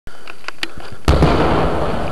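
Aerial fireworks: a few sharp pops, then a loud boom of a shell bursting about a second in, its low rumble rolling on and slowly dying away.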